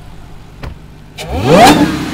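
Supercharged V8 of a Dodge Challenger Black Ghost idling, then blipped once, about a second in. The engine note climbs steeply and loudly, then drops back toward idle.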